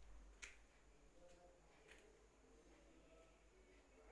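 Near silence, with two faint clicks, one about half a second in and one near two seconds in: a metal slotted spoon touching the perforated steel steamer plate as the steamed leaf rolls are turned.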